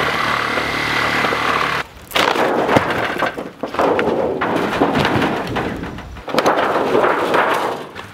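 Angle grinder running with a steady whine for a little under two seconds, then cutting off suddenly. After it, several seconds of uneven knocking and cracking.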